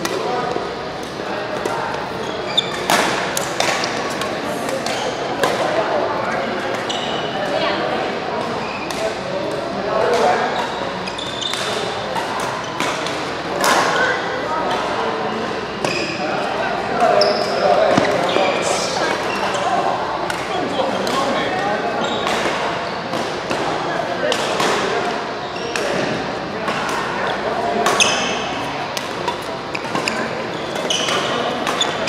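Badminton doubles play: sharp racket strikes on the shuttlecock and players' footfalls on the court, scattered throughout, with indistinct voices in the hall.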